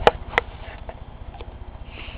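A dog's low, pulsing rumble of a growl, like a stomach growling, his warning to a kitten that is bothering him. Two sharp clicks come in the first half second.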